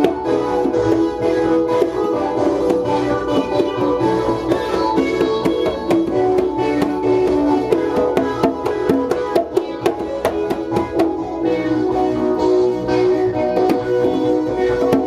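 Live jam of synthesizers playing held, changing notes over congas struck by hand, the drum strokes coming thick and fast throughout.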